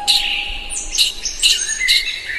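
Birds chirping: a few short, sharp, high chirps, the last three coming about half a second apart, with a faint held tone fading underneath.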